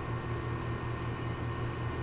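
Steady low hum with a faint hiss: room tone, no distinct event.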